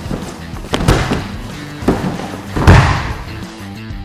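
Three thuds of wrestlers' feet and bodies on a padded wrestling mat, the loudest a little after halfway, over background music.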